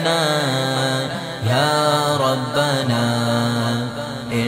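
Male voice singing a devotional naat unaccompanied by instruments, drawing out long melodic phrases that slide between notes over a steady low drone.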